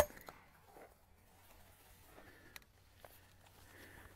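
A shotgun blast cuts off right at the start, leaving a quiet grass field with faint rustling and a few small, light clicks.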